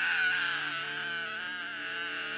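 A young boy crying out in one long, wavering wail.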